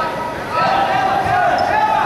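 Players shouting to each other during an indoor soccer game, long raised calls that rise and fall in pitch, the loudest stretch from about half a second in.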